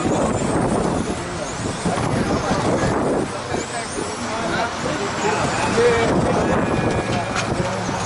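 Electric radio-controlled touring cars with 21.5-turn brushless motors racing, their motors whining in repeated rising and falling pitch glides as they accelerate and brake, over voices of people chatting.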